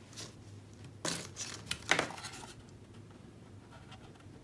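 Hands handling an opened thermal label printer's plastic housing: three short scraping, rustling noises between about one and two and a half seconds in.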